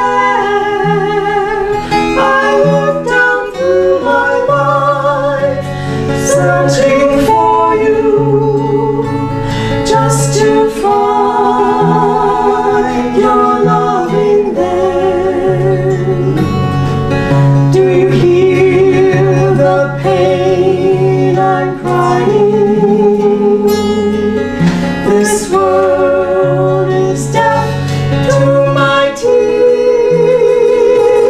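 Two women singing a song together, accompanied by a strummed acoustic guitar.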